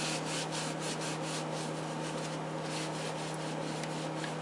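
Hands rubbing a paper towel briskly to dry themselves: a rhythmic, scratchy rustle of about four strokes a second, easing off near the end. Under it runs a steady low hum.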